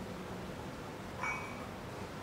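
Steady background hiss, with one brief high-pitched squeak about a second in.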